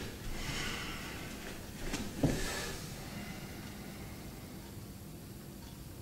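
A person breathing hard through the nose, two breathy puffs, the second starting with a short dull knock about two seconds in.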